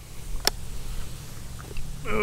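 A single sharp plastic click from a trail camera's case being handled, about half a second in, over a low steady rumble.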